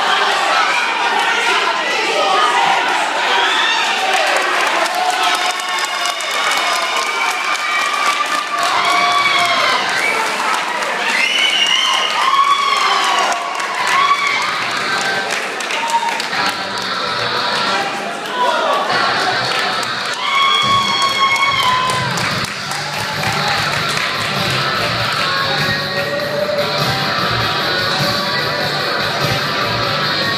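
Crowd cheering and shouting at a fight, with raised voices calling out over music; a steady low beat from the music comes up about two-thirds of the way through.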